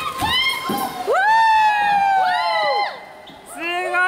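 Several voices whooping and calling out in long, high, drawn-out cries that overlap one another, inside a sea cave. The calls fall quiet briefly shortly before the end, then start up again.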